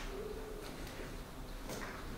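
A pigeon cooing: one low note lasting about half a second at the start, with a few faint clicks after it.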